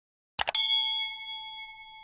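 Subscribe-button sound effect: a quick double mouse click about half a second in, then a bright bell ding that rings out and slowly fades.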